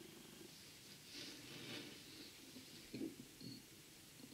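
Near silence: faint room tone with a few soft, brief noises.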